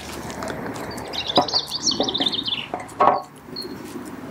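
A small bird singing a quick run of high twittering notes for about two seconds, over steady outdoor background noise. A few short knocks and rustles, the loudest about three seconds in.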